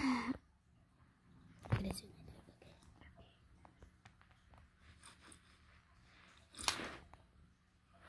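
Faint handling of a die-cast toy car on a rug: small scattered clicks, with two short soft rushes of noise, one about two seconds in and one near the end.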